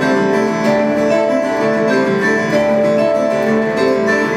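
Live instrumental music: acoustic guitars picking and strumming a tune in the chacarera rhythm, a traditional Argentinian folk rhythm, with some notes held and ringing.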